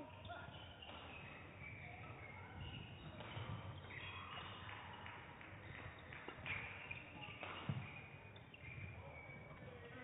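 Badminton rally on an indoor court: the shuttlecock is struck by rackets, and shoes squeak and patter on the court floor, with a couple of sharper hits about six and a half and seven and a half seconds in.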